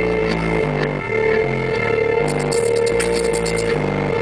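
Beatboxing into a handheld microphone through a club PA: deep bass-like vocal tones stepping from note to note over a steady tone, with a quick run of clicks in the second half.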